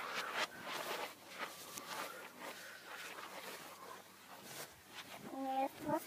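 Faint rustling and handling noise with a few soft knocks, played backwards, and a short voice sound near the end.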